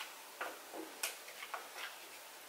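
A few faint, irregular small clicks, about six in a second and a half.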